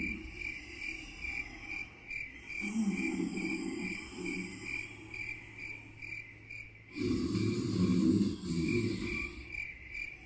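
Crickets chirping in a steady high-pitched rhythm, about two chirps a second, as night ambience. A low, rough sound swells up twice underneath, from about two and a half seconds in and again from about seven seconds in.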